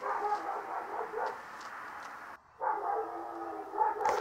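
A dog whining faintly over a steady hum, with a short gap a little past halfway.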